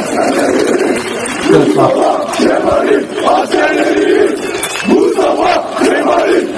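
A large crowd of newly commissioned army lieutenants shouting slogans together in loud, surging waves.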